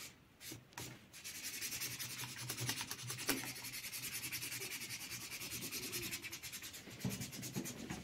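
Felt-tip marker scratching on sketchbook paper in fast back-and-forth colouring strokes, a few single strokes at first and then a steady run of quick strokes from about a second in.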